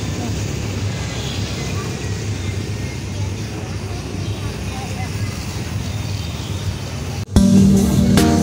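Street ambience: a steady low rumble of passing traffic with faint voices. About seven seconds in it cuts off abruptly and louder background music begins.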